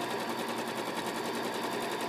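Domestic electric sewing machine running steadily, stitching a straight seam through pinned cotton fabric with a fast, even needle rhythm.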